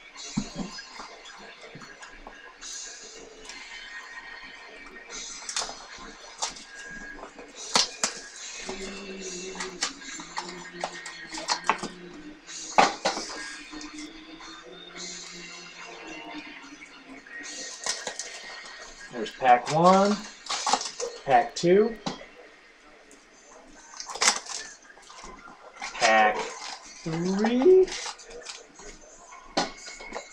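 Boxes of trading cards being handled and unwrapped: scattered crinkles, clicks and taps of plastic wrapper and cardboard. A voice is heard briefly twice, about two-thirds of the way through and again near the end.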